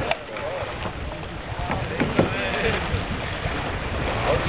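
Players' voices calling across the water during a canoe polo game, with a few sharp knocks, two close together about two seconds in, over wind rumbling on the microphone.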